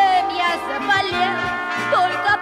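Music: a children's pop song with band accompaniment playing.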